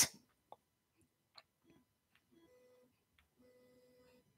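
Near silence: quiet room tone with two faint, light clicks, about half a second in and about a second and a half in.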